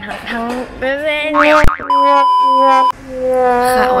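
An edited-in cartoon sound effect: a quick rising glide and a click, then a steady electronic tone held for about a second that cuts off suddenly.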